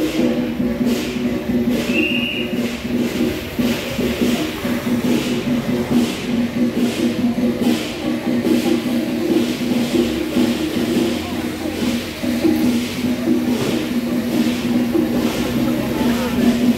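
Temple procession music: a sustained pitched tone held over a regular percussive beat of a little more than one stroke a second, with voices mixed in.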